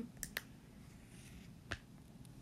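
A stylus tip tapping on a tablet's glass screen while writing: a few faint, sharp taps, two in quick succession just after the start and another about a second and a half later.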